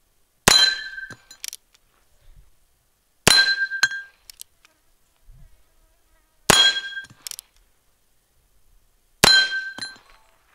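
Four shots from a Heritage Tactical Cowboy single-action revolver, about three seconds apart, each followed by a short metallic ring, typical of steel targets being hit.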